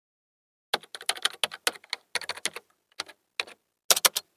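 Computer keyboard typing sound effect: a fast, irregular run of key clicks that starts under a second in and lasts about three seconds.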